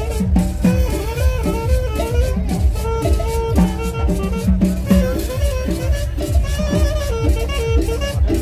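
Live Latin dance music from a small street band with acoustic guitar and upright bass: a melody line over a steady bass beat.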